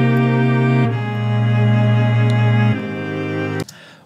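Sustained string chords from a strings sample playing back in Logic Pro. The chord changes about a second in and again near three seconds, then the sound stops shortly before the end.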